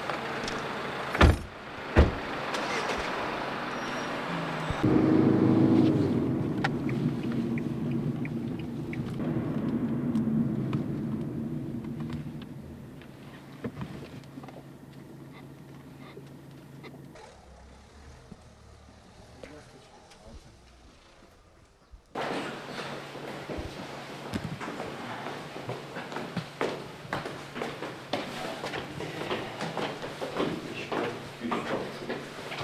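A car's doors slamming shut twice, about a second apart, then the car's engine starting and running, fading over several seconds as the car drives. After a cut, a run of quick footsteps climbing a stairwell.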